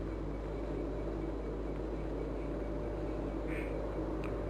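Steady low electrical hum with hiss: the background noise of the sermon recording in a pause between phrases. There is a faint short sound about three and a half seconds in.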